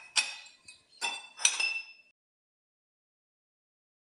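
Stainless steel tumblers clinking against one another as they are lifted from a stack, three ringing metallic clinks in the first two seconds.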